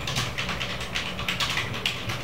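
Typing on a computer keyboard: quick, irregular key clicks over a low steady hum.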